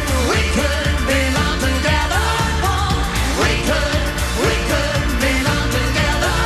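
Pop music: singing over a full backing with a steady beat, with repeated upward-sliding pitched slides about once a second.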